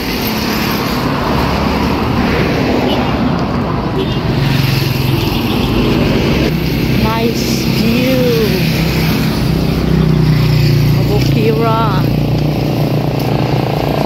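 Road traffic passing along the street: a steady low engine and tyre noise that swells from about a third of the way in. A few short voice sounds come over it.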